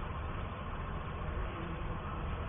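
Steady background hum and hiss of a low-fidelity room recording, heaviest in the low end and without speech or distinct events.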